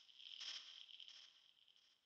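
Near silence, with faint high chirping that fades out about halfway through.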